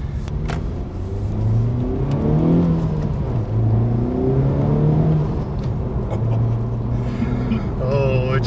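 A Honda Civic Type R FK8's 2.0-litre turbocharged four-cylinder engine accelerating, heard from inside the cabin. Its note twice climbs in pitch and drops back, as through gear changes, then runs steadier near the end.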